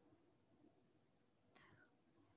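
Near silence: room tone, with one faint short sound about one and a half seconds in.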